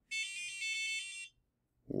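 Adafruit Circuit Playground's small piezo buzzer playing a quick run of electronic beep notes lasting about a second, stepping down and back up in pitch (A4, G4, F4, G4, A4…), several notes a second.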